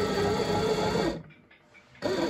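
Electric dough mixer motor running under load as it kneads a ball of bread dough, a steady hum whose pitch wavers as the dough turns. It cuts off suddenly about a second in.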